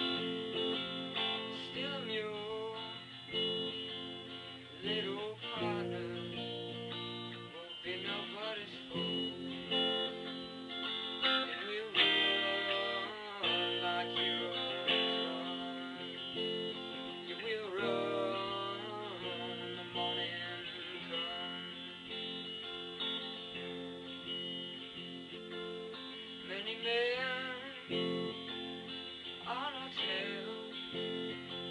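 Guitar strumming and picking the chords of a song.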